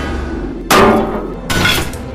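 Sound-effect impacts of metal drums being struck and knocked over: a sharp hit about two-thirds of a second in and another near the end, each followed by a brief metallic ring.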